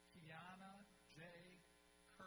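A man's voice over the arena's public-address system speaking two short phrases, faint and echoing, over a steady electrical hum.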